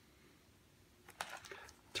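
A paper page of a picture book being turned by hand: a faint rustle with a few soft clicks, starting about a second in.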